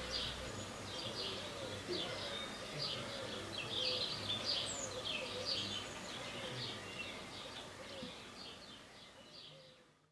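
Birds chirping, a busy run of short high chirps that fades out near the end.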